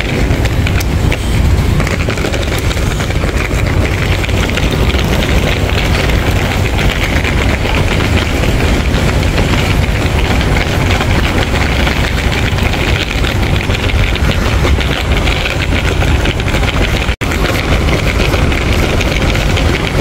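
Steady, loud rumble of road traffic and vehicle engines, heaviest in the low end, with no let-up; the sound cuts out for an instant near the end.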